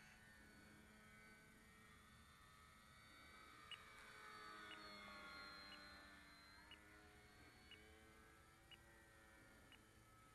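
Faint electric motor and propeller of a Durafly Tundra RC plane flying at a distance, its whine swelling through the middle and dropping in pitch as it passes. Short high beeps sound about once a second through the second half.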